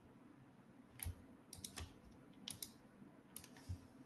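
Faint keystrokes on a computer keyboard: sharp short clicks in small clusters of two or three, starting about a second in.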